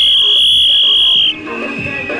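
A small plastic toy whistle blown in one long, shrill, steady note. Just past a second in it drops to a lower, softer note.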